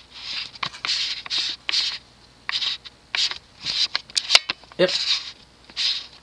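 A string of short, scratchy rustling noises, about two a second, with a faint steady low hum under the first half.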